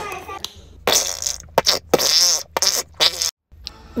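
Tube of acrylic paint being squeezed, paint and trapped air sputtering out of the nozzle in several short squelches.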